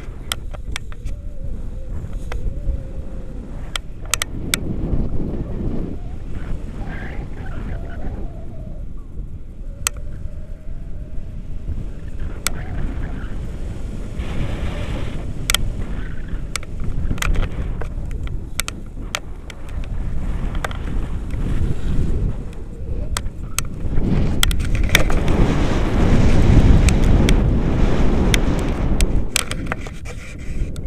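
Wind rushing and buffeting on a handheld action camera's microphone in paragliding flight: a low, gusting rumble that swells louder near the end. Scattered sharp clicks run through it.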